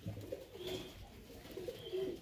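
A bird cooing softly in low, wavering calls, with a few short, faint high chirps.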